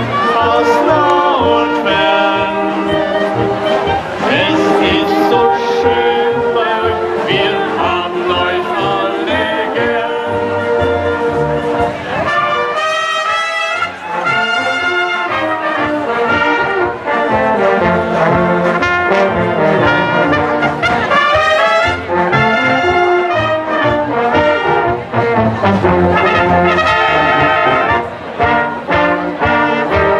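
Brass band playing a tune, with its low parts dropping out briefly about halfway through.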